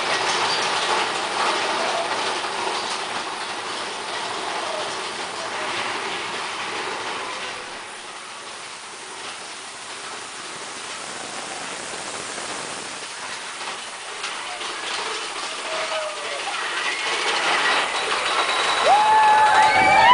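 Mine-train roller coaster running along its track: a steady rattling clatter of wheels and cars. It eases off in the middle and builds again toward the end, when riders' voices rise.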